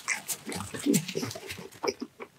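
Close-miked chewing: a quick run of wet mouth clicks and lip smacks.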